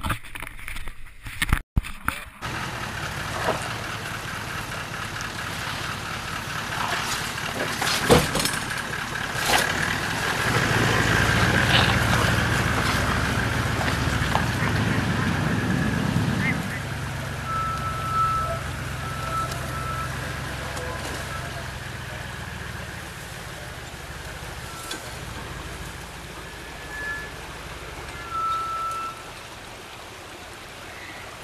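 A 4WD vehicle's engine running under load on a rocky hill climb, with a few sharp knocks about a third of the way in; the engine note drops to a lower, steadier level a little past halfway.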